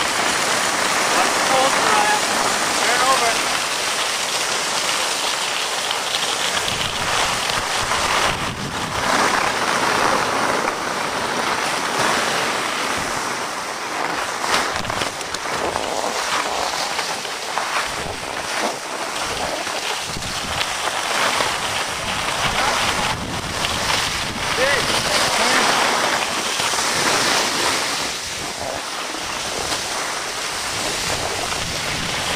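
Skis sliding and scraping over packed snow, with wind rushing over the microphone: a continuous hiss that swells and eases as the skier moves down the slope.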